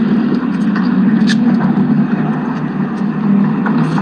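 A steady low mechanical drone that holds the same pitch throughout, with a brief tick just over a second in.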